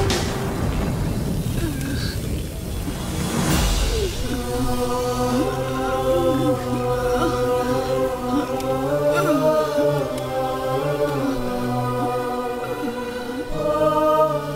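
Dramatic TV background score: a low rumbling swell with a whoosh in the first few seconds, then sustained chanted choral voices over a steady low drone.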